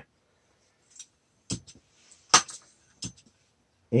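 Four scattered clicks and light knocks, the third, a little over two seconds in, the loudest: the metal fittings of a hand pump's fill hose being handled.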